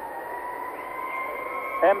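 Arena horn sounding one steady tone for about two seconds, its pitch drifting slightly upward over a low crowd murmur. It is the signal that starts the three-point shooting round.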